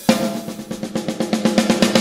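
Rock song breakdown: the heavy bass and guitars drop out, leaving a snare drum roll over a held note. The roll quickens and grows louder, building until the full band crashes back in right at the end.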